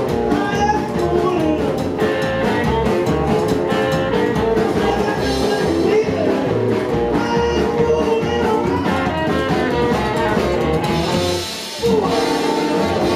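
Live rockabilly band playing an instrumental passage: upright double bass, drum kit, electric guitar and saxophone. The music drops briefly in level just before the end.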